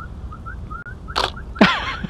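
A person whistling a quick run of short rising chirps, about three or four a second. Two louder noisy bursts cut in about a second and a half in.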